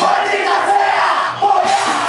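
Many voices shouting together at a live punk rock show, as the low end of the band drops back for a moment, with a brief dip about a second and a half in.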